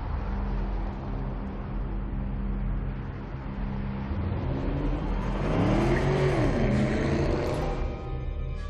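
A car engine runs at a steady low idle, then revs up and falls back down about six seconds in, which is the loudest point.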